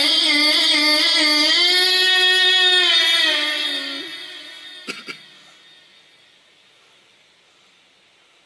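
A man's high voice chanting a melodic line through a handheld microphone, holding a long wavering note that fades out about four seconds in. Two sharp knocks follow about a second later, then only faint room tone.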